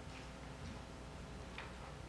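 Quiet room tone with a faint steady hum and two faint short clicks, one just after the start and one about one and a half seconds in.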